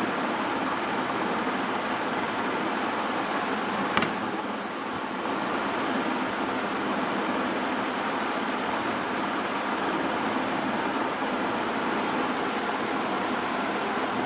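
Steady background hiss of room noise, with one short click about four seconds in.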